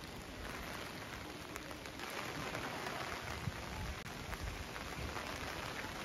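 Steady rain falling on wet paving and umbrellas, an even hiss with occasional single drops ticking close by, a little louder after about two seconds.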